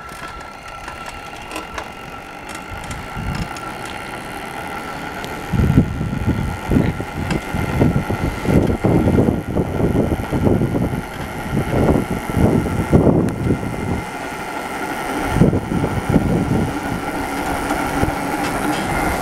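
A 1971 Sachs Görike moped converted to a 1 kW electric motor, riding along with a steady high whine from its electric drive. From about five seconds in, an irregular low rumble and buffeting joins it while the moped is under way.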